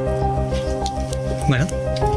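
Background music score: sustained notes held over a fast pulsing low beat, with a brief vocal sound about one and a half seconds in.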